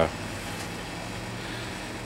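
A pause in speech, leaving a steady low hum and hiss: workshop room tone.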